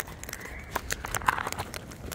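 Sulphur-crested cockatoos feeding from a plastic tray of seed, cracking husks and knocking their beaks on the tray: a run of irregular clicks and crunches.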